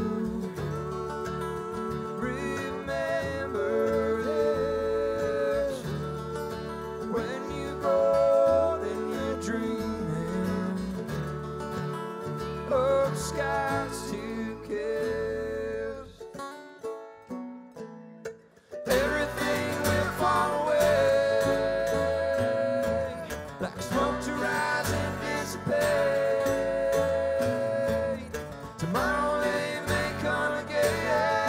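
Live bluegrass band playing: mandolin, banjo and acoustic guitar with singing. About 16 seconds in the band nearly drops out for a couple of seconds of sparse notes, then comes back in full.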